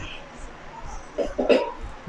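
A person's short cough about one and a half seconds in, over a low steady background hiss.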